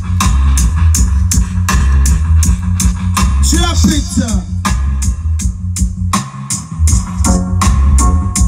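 Music played through a sound system's speaker stacks, with heavy bass and a steady ticking hi-hat beat. A short vocal line comes through about three and a half seconds in, and the bass drops out briefly about six seconds in.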